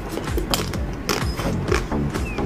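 Crunching and cracking of the chocolate-and-nut shell of an ice cream bar as it is bitten and chewed, over background music.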